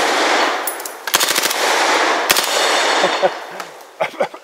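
An H&K MP5A3 9mm submachine gun firing several short full-auto bursts: one right at the start, a brief one, a longer one about a second in, and a last short one past two seconds. The reverberation after the bursts fades out slowly.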